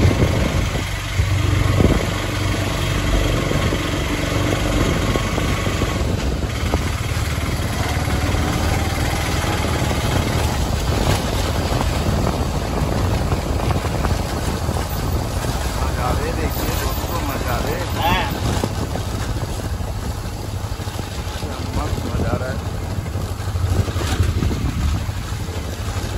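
Auto-rickshaw engine running steadily as the vehicle drives along, heard from inside the open passenger cabin as a continuous low drone.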